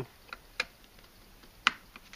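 A few light plastic clicks and taps as a USB-C plug on an inline USB tester is handled and pushed into a charger's port, the sharpest click about one and a half seconds in.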